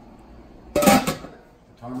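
A kitchen timer going off: one loud, sharp ring about a second in that fades within half a second, the signal that the jars' 20-minute boiling-water bath is done.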